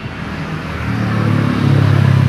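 A motor vehicle's engine, a low steady hum that grows louder from about a second in.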